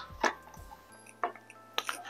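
Light knock and a few soft clicks as a shelf board with a lamp socket is set down on a wooden tabletop and parts are handled, over quiet background music.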